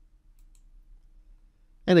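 Faint background hum with a couple of faint computer mouse clicks about half a second in; a man's voice starts just before the end.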